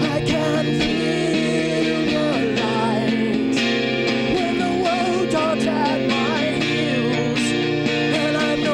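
A man singing a song to his own acoustic guitar accompaniment, the voice wavering over steadily played guitar chords.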